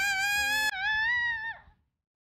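A woman's long, drawn-out wailing cry, rising in pitch, then breaking off shortly before the end.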